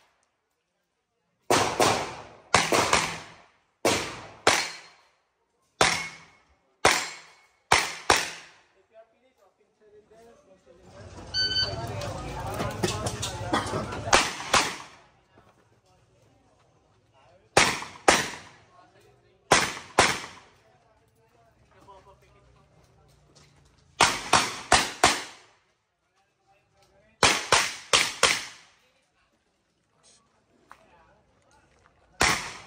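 Pistol shots fired rapidly outdoors in quick pairs and strings of three or four, about twenty in all, each with a short echo, as a practical-shooting competitor works through a stage.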